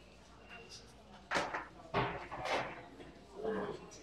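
Several sharp knocks and clatter of items being handled on a metal wire shelf of glassware and dishes, starting about a second in, with a short murmur of a voice near the end.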